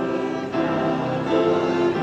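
A church congregation singing a hymn together with piano accompaniment; the singing starts just before this point.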